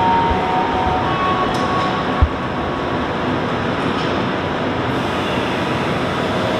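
Rubber-tyred Montreal Metro train moving alongside the platform: a loud, steady rushing rumble of rubber tyres on the running track. In the first two seconds it carries a high whine of two or three steady notes, and there is a single low thump about two seconds in.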